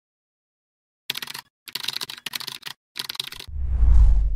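Keyboard-typing sound effect: three quick runs of key clicks. Near the end a loud, deep bass whoosh swells in and starts to fade, a transition effect.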